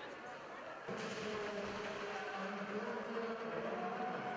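Faint, echoing arena public-address announcement over ice-rink ambience, starting about a second in. It announces a change of goaltender.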